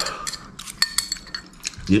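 Chopsticks tapping and scraping against ceramic bowls while leftover food is pushed from one bowl into another: a quick run of sharp clinks, a few of them ringing briefly.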